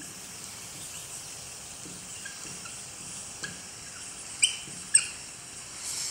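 Marker pen writing on a whiteboard: faint scratching strokes over a low room hiss, with two short, sharp squeaks of the marker tip later on.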